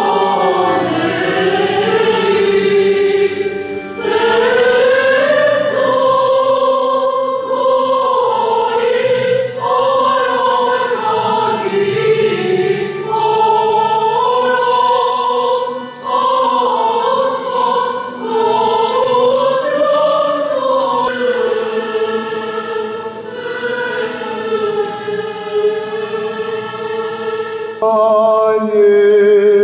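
Church choir singing a slow hymn of the Armenian Apostolic requiem service, several voices together in long phrases.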